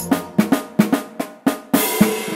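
Drum break in a children's pop song: a run of about seven separate drum hits with the melody dropped out, before the backing music comes back in near the end.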